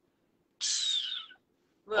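A short hiss made with the mouth, about half a second in and lasting under a second, with a faint whistle in it: a 'tsss' imitating the sizzle of a hand touching a hot stove.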